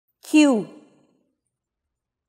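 Speech only: a voice says the word "queue" once, its pitch falling.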